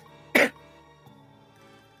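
A woman coughs once, sharply and briefly, about half a second in, over soft background music.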